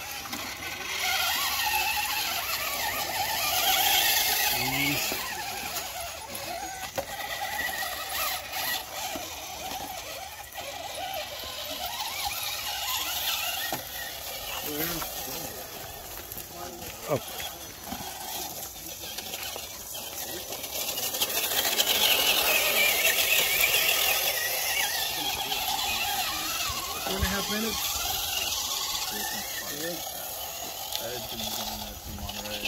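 Radio-controlled rock crawler's electric motor and gears whining in bursts as it climbs over boulders, louder near the start and again past the middle, with indistinct chatter from people nearby.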